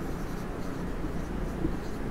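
Marker pen writing a word on a whiteboard, a faint scratching of the felt tip against the board.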